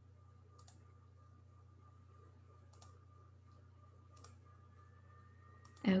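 A few faint computer mouse clicks, about four spread out with a second or more between them, over a low steady hum.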